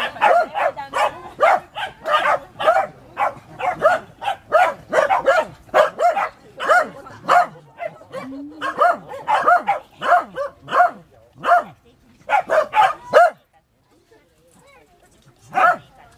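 Pembroke Welsh corgi puppies yapping in rapid, high short barks during rough play, about two to three barks a second. The barking stops for a couple of seconds, then one more bark comes near the end.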